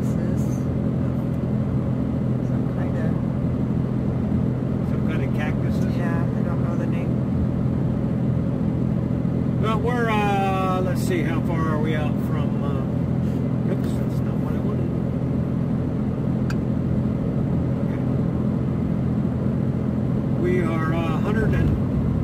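Steady engine and tyre drone heard inside a vehicle's cabin while cruising on a highway. A brief voice comes in about ten seconds in, and again near the end.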